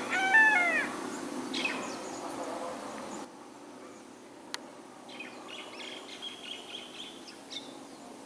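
Birds calling: a run of loud arching calls in the first second and another shortly after, then, after an abrupt drop in level a little past three seconds, fainter quick chirps. A single sharp click comes about halfway through.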